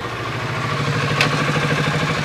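Kawasaki Ninja sportbike engine running at low revs as the motorcycle rolls up and stops, with a single sharp click about a second in.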